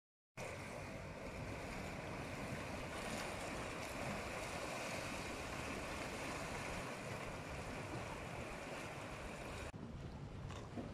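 Small waves washing and splashing against the rocks of a breakwater, a steady wash of water that starts a moment in.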